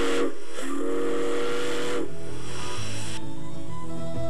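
Steam locomotive whistle blowing a chord of several steady tones: the end of one blast, then a longer blast of about a second and a half. Steam hisses under it and cuts off a little past the middle.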